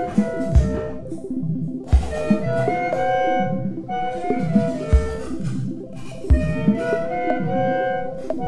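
Modified clarinets and electronics playing held, overlapping tones that shift in pitch. Four deep thumps fall at uneven intervals.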